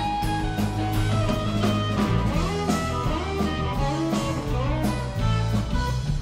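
Live rock band playing an instrumental passage: an electric guitar plays lead lines with bent notes over bass, drums and keyboard.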